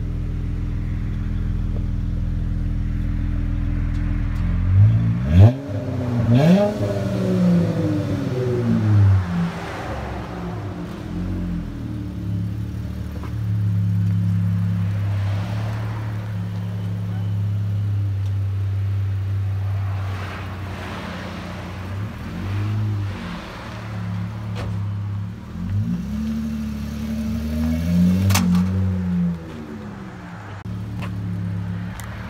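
A 2016 Dodge Charger's 3.6 L V6 with a Flowmaster Super 44 muffler and dual exhaust, resonators deleted. It idles steadily, is revved a few times about five seconds in, holds a steadier higher speed in the middle, and revs again near the end. The tone is nice and deep.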